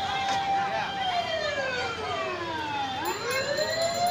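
A siren sounding on a busy street: a held wailing tone that slides down in pitch over about two seconds, then climbs back up to its steady note near the end, over street noise and chatter.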